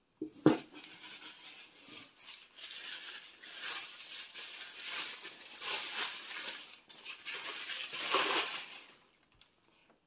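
Plastic packaging crinkling and rustling as hands dig through a cardboard box, with a sharp tap about half a second in; the rustling stops near the end.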